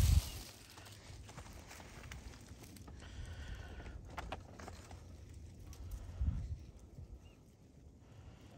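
Quiet rustling and faint ticking of footsteps and handling on dry leaf litter, with a soft low bump at the start and another a little after six seconds in.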